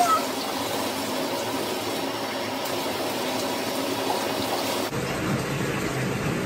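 Handheld shower sprayer running, water spraying steadily onto a dog's fur and into a bathtub. The sound changes abruptly about five seconds in.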